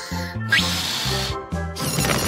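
Children's cartoon music with a bouncing bass line, over which a cartoon air sound effect plays as a balloon is blown up: a short rising whistle about half a second in, then a long rushing hiss of air, with a second hiss starting near the end.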